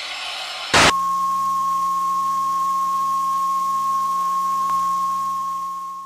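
A loud brief click about a second in, then a steady, high-pitched electronic beep tone with a faint low hum beneath it, held unchanged and starting to fade near the end.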